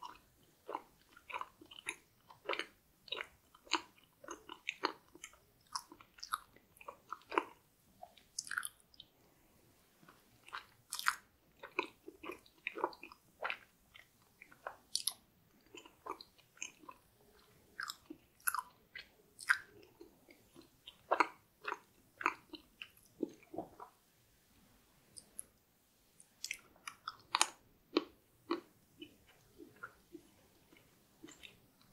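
Close-miked mouth sounds of a person chewing chocolate dessert: irregular wet, clicky chews and smacks, with a couple of brief pauses.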